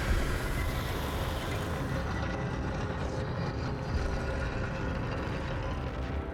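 A heavy stone wall panel grinding and rumbling as a hidden passage slides open: a long, steady rumble that starts with a jolt and tails off near the end.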